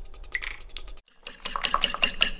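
A fork beating raw eggs in a ceramic bowl: a fast run of clicks, around ten a second, as the tines strike the bowl, stopping briefly about halfway through and then going on.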